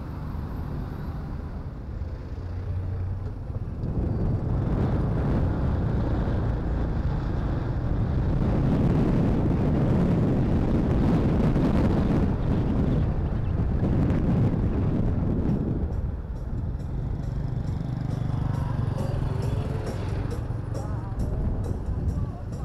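Riding a motorcycle taxi: the motorcycle's engine and heavy wind noise on the microphone rise after a few seconds and are loudest in the middle, easing off toward the end.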